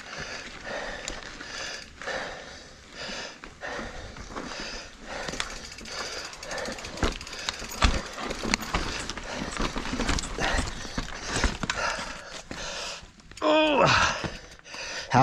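A rider pedalling a mountain bike hard up a short, steep rocky pitch: heavy, uneven breathing, with the bike clicking and knocking over rock. A short strained vocal sound comes near the end.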